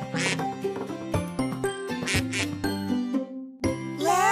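Cheerful cartoon theme jingle with two short quacking squawks, one just after the start and one about two seconds in.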